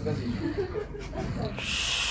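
A man snoring in deep sleep, with a hissing breath starting about one and a half seconds in.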